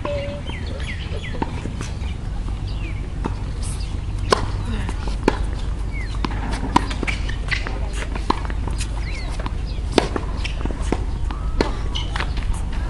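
Tennis ball being hit back and forth by rackets during a rally on an outdoor hard court: sharp pops roughly every second and a half over a steady low rumble.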